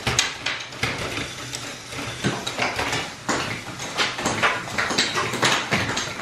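Motor-driven Lego Technic catapult running: plastic gears, a rack and pinion and a crank-driven trigger clatter continuously. Louder sharp plastic snaps come every so often as the rubber-band-tensioned arm is released.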